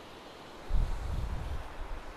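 Wind buffeting the microphone in a low rumble for about a second, over a steady rush of creek water.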